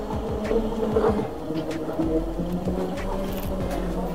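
Small electric drift kart's motor buzzing steadily as it is driven under throttle.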